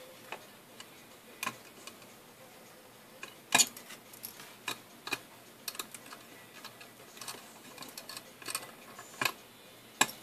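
Scattered small clicks and taps of wires being pushed into an LED controller's screw terminals and a precision screwdriver working the terminal screws, the loudest click about three and a half seconds in.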